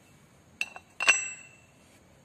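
Steel transmission gears and synchro parts from a Hino truck gearbox clinking together as a gear is set down on the pile: a small clink about half a second in, then a louder one that rings on briefly with a high metallic tone.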